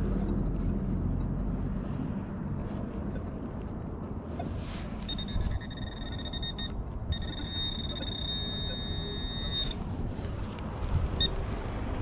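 A metal detector's steady, high electronic target tone sounds for about five seconds, with a short break in the middle, over a hole being dug in turf. A low traffic rumble runs underneath, with a few faint scrapes and knocks from the hand digger.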